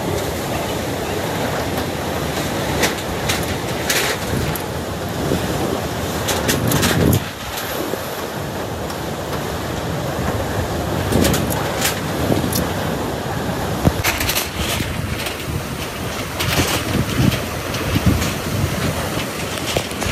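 Typhoon wind blowing hard and steadily, swelling in gusts, with scattered sharp knocks and clatters throughout.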